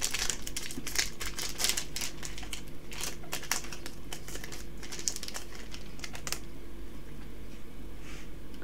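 Foil wrapper of a Yu-Gi-Oh! Legendary Duelists: Magical Hero booster pack crinkling and crackling as it is torn open by hand: a quick run of small crackles that thins out after about six seconds.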